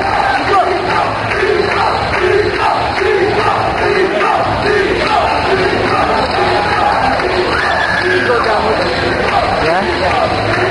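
Large crowd of fight spectators shouting and yelling together in a continuous loud din, with individual voices calling out above it.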